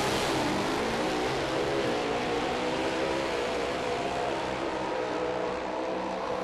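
Pro Stock drag-racing motorcycles running at full throttle down the drag strip, their engines giving a loud, sustained, steady note through the run.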